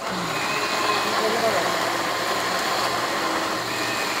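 Electric blender running steadily, puréeing boiled tomatillos with fresh garlic and cilantro into green salsa verde. The noise comes on suddenly and holds at an even level.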